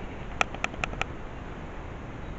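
Four sharp clicks in quick succession, spread over about half a second, over a low steady room hum.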